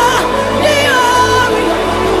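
A woman singing a gospel worship song in Yoruba into a microphone over a live band, holding long notes with a wavering vibrato.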